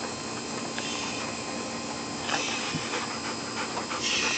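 A dog panting heavily over a steady low hum.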